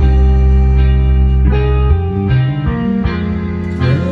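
Karaoke backing track playing loudly: strummed guitar chords over a held bass line that shifts about halfway through.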